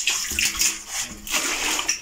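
Water splashing and sloshing as a crowded mass of live fish thrash in a shallow container, a steady run of small splashes.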